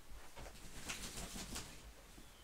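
A pet licking itself: a quick run of faint wet clicks about a second in.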